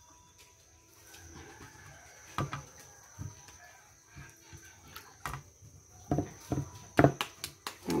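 A few short knocks and taps at irregular intervals over faint background noise, with a thin steady high tone.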